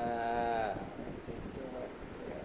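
A man's voice making a drawn-out, wordless, bleat-like sound about a second long, wavering slightly in pitch, followed by a shorter, fainter vocal sound near the end.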